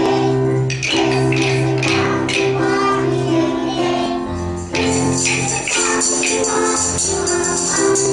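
Children's class performing a song with musical accompaniment, shaking small jingle bells in rhythm while some of them sing; the jingling gets brighter about five seconds in.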